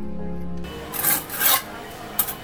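Mason's trowel scraping cement mortar across ceramic bricks while a wall is being laid, a few rough scrapes with the strongest about a second in and again half a second later.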